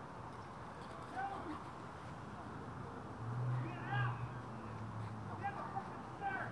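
Faint voices of teenagers laughing and letting out short squeals while play-wrestling, the loudest about four seconds in, over a low steady hum in the middle.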